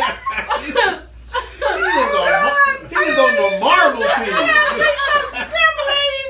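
A group of adults laughing together, with voices sliding up and down in pitch, and a short lull about a second in.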